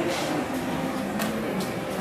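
Room ambience in a hall: a low steady hum with faint background voices, and three light clicks, the first just at the start and two more just after a second in.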